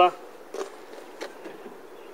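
Low, even outdoor background noise in a pause between words, with two faint short ticks, about half a second and a second and a quarter in.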